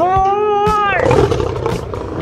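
A lion roaring: one long roar, steady at first and then rough and noisy from about a second in.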